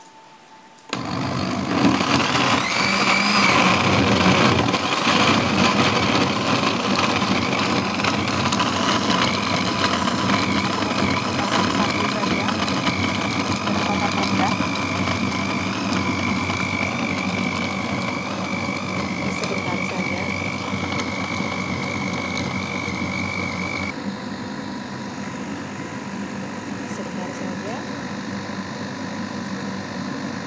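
Philips ProBlend 4 countertop blender switched on at low speed about a second in, its motor running steadily as it blends frozen soursop chunks with ice cubes, water and milk. A high whine runs through the sound until about 24 seconds in, when it drops out and the sound gets a little quieter.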